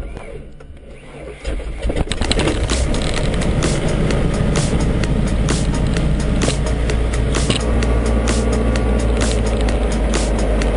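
Diamond DA40's single piston engine starting: it catches about one and a half seconds in, then runs steadily at a loud idle with the propeller turning, heard from inside the cockpit.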